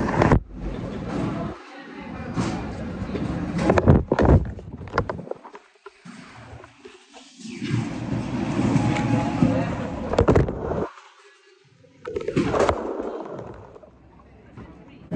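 Indistinct background voices with rustling and a few sharp knocks from a handheld phone being moved about, the sound dropping out suddenly twice.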